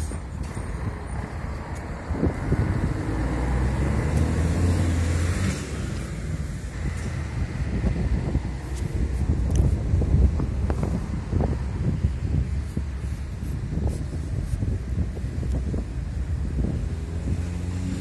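Outdoor street noise with wind buffeting the microphone as a low rumble, and a car passing by a couple of seconds in.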